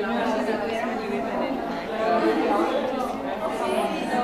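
Many women's voices chatting at once, overlapping into an indistinct hubbub with no single voice standing out.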